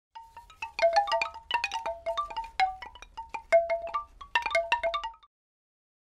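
Chimes for an opening logo sting: a quick, uneven run of struck bell-like notes, each ringing briefly, that stops abruptly about five seconds in.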